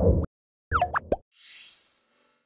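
Short sound-effect sting for an animated news-channel end card: a low thump, then a quick run of rising pops about three-quarters of a second in, then a high swish near the end.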